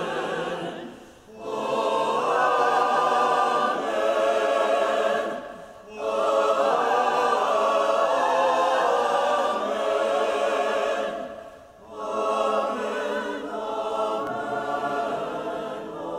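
Church choir singing in phrases, with brief pauses about a second, six and twelve seconds in.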